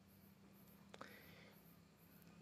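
Near silence: a faint steady low hum, with one soft click about a second in.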